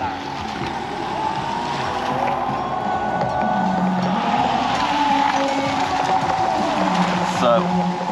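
Indistinct voices and music-like held notes over steady background noise.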